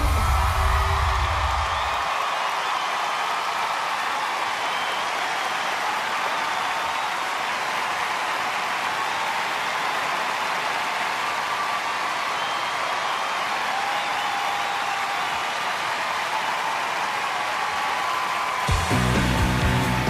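Large arena crowd cheering and applauding, steady and loud, after the song's music cuts off about two seconds in. A bass-heavy music cue comes in near the end.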